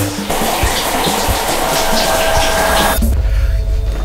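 Shower spray running, an even hiss heard over background music; the water cuts off suddenly about three seconds in, leaving a low rumble.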